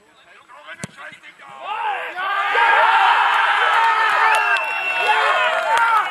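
A football kicked with a sharp thud about a second in, then many voices of players and spectators shouting and cheering loudly as a goal goes in.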